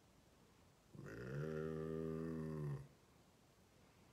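A man's drawn-out, steady "hmmm" hum, one low held note of about two seconds starting about a second in.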